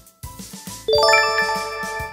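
A bright chime sound effect about a second in: a quick run of bell-like notes that ring on together and slowly fade, over a light background music bed. It is the 'correct' cue that goes with an on-screen green checkmark.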